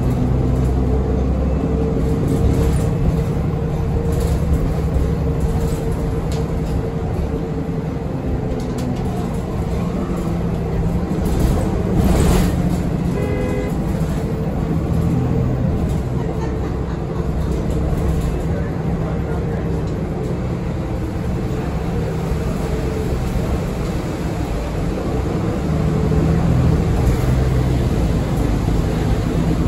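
Inside a 2015 Nova Bus LFS city bus under way: steady engine and road rumble throughout. A short run of beeps sounds about halfway through.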